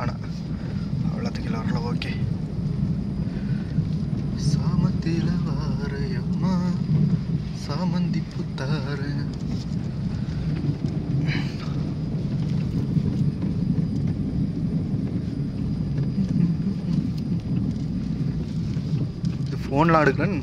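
Steady low rumble of a car's engine and tyres heard inside the cabin while driving slowly on a rough, wet rural road, with faint fragments of voice in the first half.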